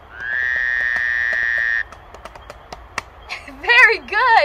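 A steady, high held tone for about the first two seconds, then a run of sharp, uneven knocks of a hand drumming on a wooden log, with a voice coming in near the end.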